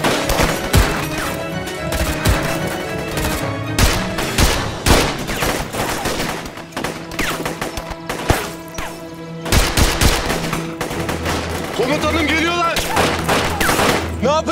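Gunfire in a film firefight: rifle shots and short bursts at irregular intervals, over steady dramatic background music.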